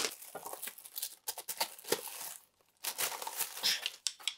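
Clear plastic bag crinkling in irregular bursts as a pair of wooden gymnastic rings is pulled out of it, with a short pause a little past halfway.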